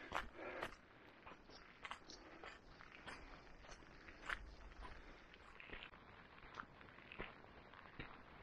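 Faint footsteps of a hiker walking along a dirt forest track, unevenly paced at roughly one to two steps a second.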